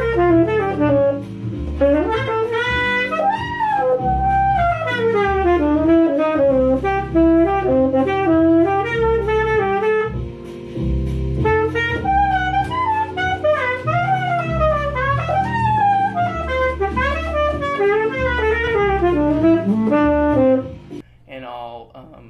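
Saxophone improvising fast jazz lines over a blues backing track with bass and chords, a practice chorus in which, by the player's account, he loses the time placement of one lick and struggles to get back on. The playing stops about a second before the end.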